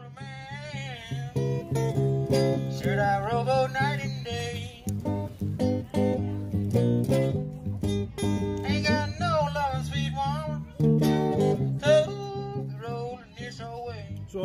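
Acoustic guitar music, plucked and strummed, with a wavering melody line over a steady bass.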